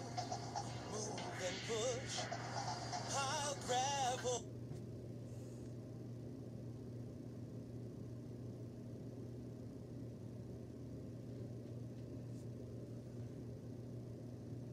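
A sung children's TV song about construction playing through a tablet's speaker, cut off suddenly about four seconds in. After that only a faint steady low hum remains.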